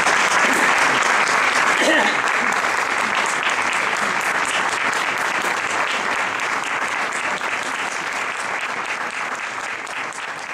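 Audience applauding after a performance, dense clapping that slowly fades, with a voice calling out briefly about two seconds in.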